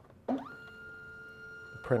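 MakerBot METHOD 3D printer's filament feed motor starting up with a quick rising whine about a third of a second in, then running with a steady high whine as it grabs the ABS filament and pulls it into the printer.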